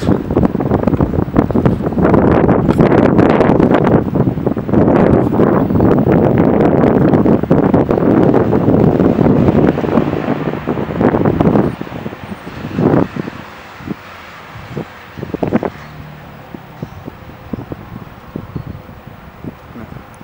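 Wind buffeting the camera's microphone, loud and crackling for the first half, then easing off about twelve seconds in, leaving a quieter rumble with a few sharp knocks.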